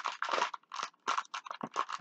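Paper towel crinkling and rustling as hands are wiped in it: a quick, irregular run of short crackly rustles.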